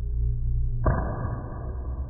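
Muffled, heavily filtered sound effect laid over the picture: a steady low drone, then a sudden whoosh-like hit just under a second in that holds on.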